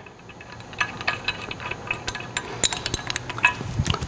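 Light, scattered metallic clicks and clinks of a nut and bolt being handled and threaded on by hand on the packing gland of a Berkeley jet drive pump.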